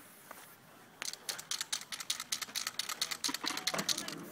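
Aerosol spray-paint can being shaken, its mixing ball rattling in fast clicks. The rattle starts about a second in and keeps going.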